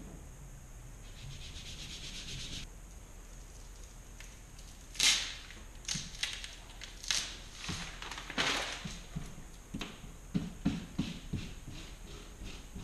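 Vinyl decal transfer tape being handled and pressed onto a wall: a steady rustle near the start, then sharp crinkles and scratchy sweeps of the plastic sheet, and several soft thumps of the hand pressing it against the wall near the end.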